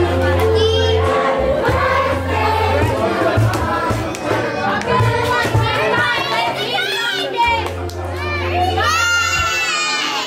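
Party music with a steady bass line, mixed with a crowd of children shouting and cheering. One high child's shout stands out about nine seconds in.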